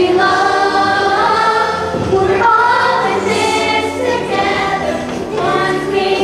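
The young cast of a school stage musical singing together in chorus, holding long notes over a musical accompaniment.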